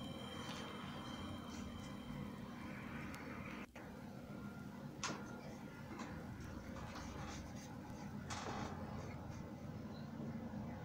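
Faint swishes of a watercolour brush on paper over a steady low background hum, with one sharp click about five seconds in.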